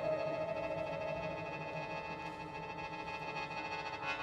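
Soft music of steady held tones from the orchestra and solo sheng (Chinese mouth organ). The chord thins a little in the middle and swells again near the end.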